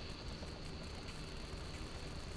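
Quiet, steady background noise with a faint, steady high-pitched whine; no distinct clicks stand out.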